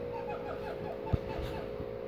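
A steady low hum in the room, with a single sharp knock about a second in.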